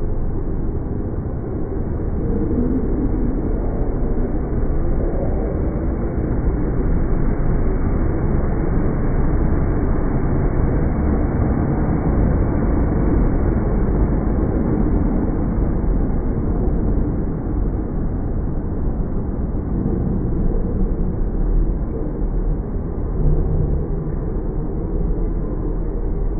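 South West Trains passenger train pulling slowly into the platform, a steady low rumble of its running gear and wheels on the rails as it slows almost to a stop.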